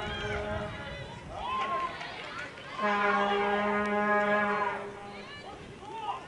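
A steady, flat-pitched horn-like drone. It dies away just after the start and sounds again for about two seconds mid-way, the loudest thing heard, with voices calling out between and over it.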